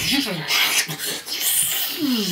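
A man's voice making wordless vocal sounds whose pitch glides up and down, mixed with breathy hiss.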